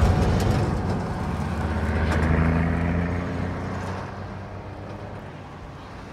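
Semi-truck's diesel engine and tyres passing close and then pulling away down the highway, a low engine drone that fades steadily.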